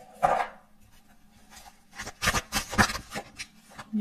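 Tarot cards being shuffled and a card drawn: a short rustle just after the start, then a quick run of card snaps and rubs from about two to three seconds in.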